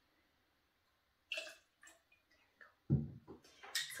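Liqueur tipped from a measuring jigger into a copper cocktail shaker, a short splash, followed by a few small clicks. Near the end comes a thump as something is set down on the counter, the loudest sound here, and a brief sharp clink.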